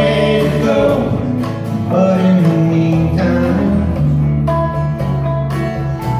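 A small band of acoustic and electric guitars plays a slow, gentle song live, with voices singing held notes over the strummed chords and a steady bass line.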